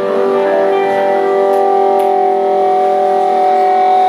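Electric guitar ringing out through its amplifier as one steady sustained tone, slowly growing louder.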